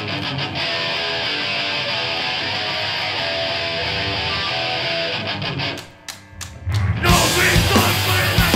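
Distorted electric guitar playing alone, chords ringing, for about six seconds. It breaks off into a short gap with a few sharp clicks, and the full hardcore punk band, drums and bass with the guitar, comes in loudly about seven seconds in.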